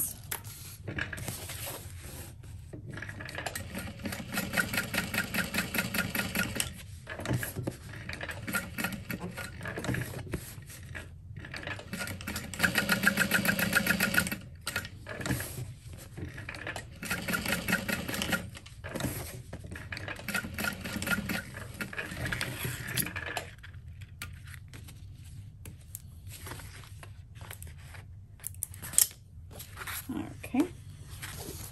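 Juki industrial sewing machine stitching a cork tag onto fabric in a series of short runs, stopping and restarting every few seconds. The stitching ends a few seconds before the close, followed by a single sharp click.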